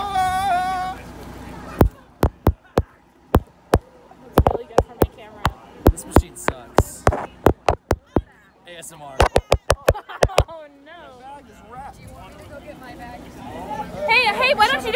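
Fingers knocking and rubbing on a phone close to its microphone: an irregular run of sharp clicks, two or three a second, starting about two seconds in and stopping about ten seconds in. A brief wavering vocal sound comes at the start, and wavering voice sounds come again around the end of the clicks.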